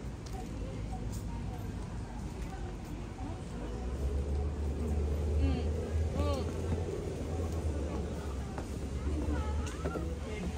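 City park ambience: a steady low rumble of traffic that grows louder about four seconds in, with people's voices scattered over it.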